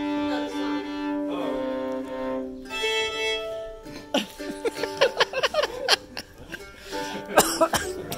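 A fiddle bowing long held notes, stepping to a new pitch every second or so; about four seconds in it breaks off and the players laugh.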